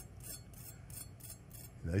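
A knife sawing through the crispy fried crust of an arancino (Italian rice ball): quiet, rhythmic crisp rasping, about four or five strokes a second. The crackle is the sign of a well-fried, crispy crust.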